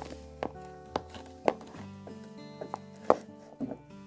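Plastic toy horse hooves knocking on a wooden floor in irregular taps like hoofbeats, about seven knocks with the loudest about three seconds in, over background music.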